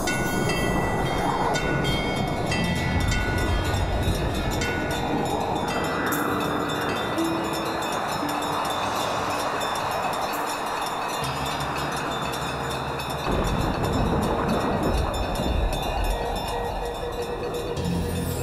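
Dramatic background score with shimmering chimes over a dense, rushing swell, with short ringing notes in the first few seconds.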